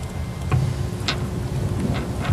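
Meeting-room tone during a wordless pause: a steady low hum with a couple of faint ticks.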